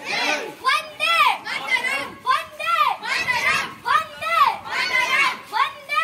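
Group of children's voices chanting slogans in unison, short shouts about two a second, each rising and falling in pitch.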